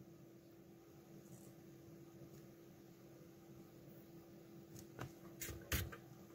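Quiet workbench room tone with a faint steady hum while the pins of a chip are hand-soldered. A few small sharp clicks come near the end as the soldering iron is lifted away from the board.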